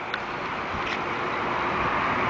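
Road traffic noise: a steady hiss of a vehicle that grows gradually louder, with a couple of faint ticks.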